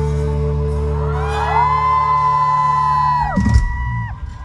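A live band's final held chord rings out while the concert crowd whoops and screams from about a second in. The chord stops a little after three seconds, with a loud thump just after.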